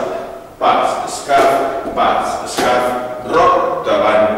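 A man speaking in short phrases with brief pauses.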